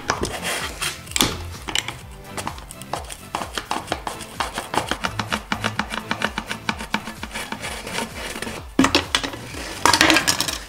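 Background music with a steady beat, over a utility knife blade cutting through the plastic bottom of a tub in many short scraping strokes.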